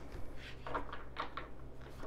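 Deck of tarot cards handled and shuffled by hand: a few short, soft scratchy card-sliding sounds about half a second in and again just past a second.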